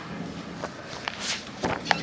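A few scattered light knocks and a brief rustle about a second in: people moving about and handling things in a room, with footsteps among them.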